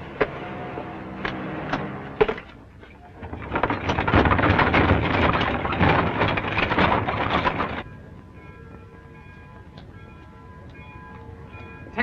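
A train at a station: a loud rushing, clattering noise builds about three seconds in, runs for about four seconds, then cuts off. Faint steady background tones follow.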